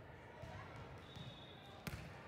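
A volleyball served overhand: one sharp slap of the server's hand striking the ball near the end.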